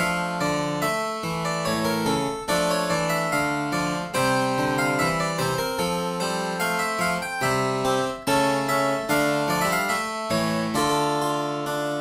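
Kawai CN39 digital piano played with its harpsichord voice: a steady stream of quick, bright, plucked-sounding notes.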